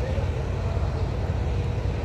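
Steady low rumble of city street noise, with a faint steady hum over it.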